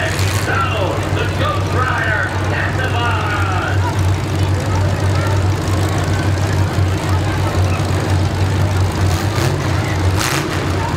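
Several V8 demolition derby cars idling together, a steady low rumble, with crowd voices in the first few seconds and a couple of short sharp noises near the end.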